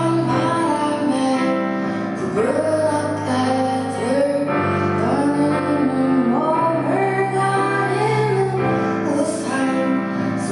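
A woman singing a slow song live, accompanying herself on a digital piano.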